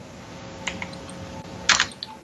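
Computer keyboard being typed on: a couple of light key clicks, then a quick cluster of louder clicks near the end, as a web search is run.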